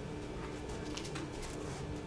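A pause between spoken phrases: quiet room tone with a faint steady hum and a few faint ticks.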